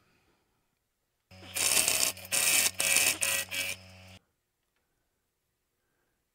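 Wood lathe running with a steady motor hum while a gouge takes about five short roughing cuts into a spinning maple burl, each cut a loud burst of noise. The sound comes in about a second in and stops abruptly a little after four seconds.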